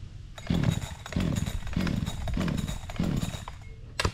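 Gas chainsaw being pull-started, about five quick pulls on the starter cord, each spinning the engine over with a falling whir. The engine turns over but does not catch.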